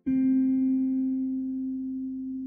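Slow, relaxing guitar music: a single low guitar note or chord plucked at the start and left to ring, slowly fading.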